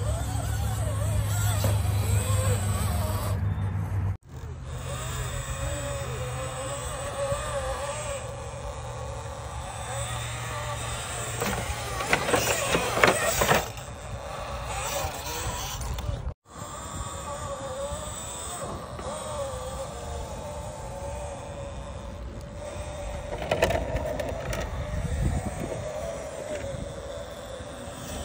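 A 1/10-scale RC rock crawler's electric motor and geared drivetrain whining as it crawls over rock, the pitch rising and falling with the throttle, with a louder stretch of grinding and scraping about halfway through. The sound drops out briefly twice where the footage is cut.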